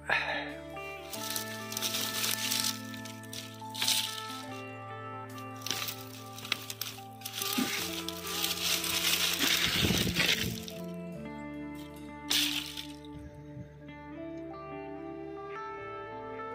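Background music with held notes, over which dry brushwood branches rustle and crack in short bursts as they are pulled from a pile by hand.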